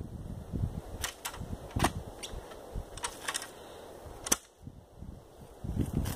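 Clamshell post-hole digger working a planting hole: scattered sharp clacks and knocks from its blades and handles, the loudest about four seconds in.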